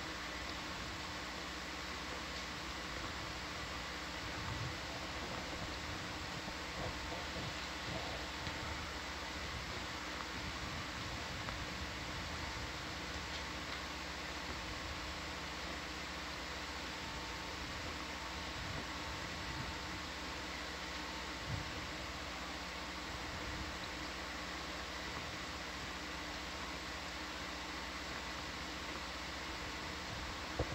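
Steady hiss and hum of equipment and ventilation in a ship's ROV control room, heard through the open audio feed, with a few faint steady tones and occasional small ticks.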